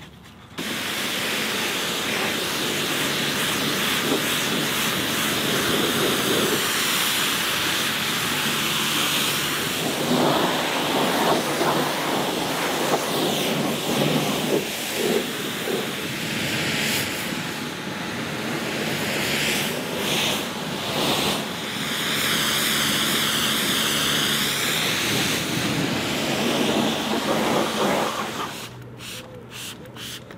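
Pressure washer jet hissing steadily as it rinses foam off a car's bodywork, starting abruptly about half a second in. Around the middle the water hits closer surfaces with a heavier spatter, and there are a few brief dips where the spray pauses or moves off.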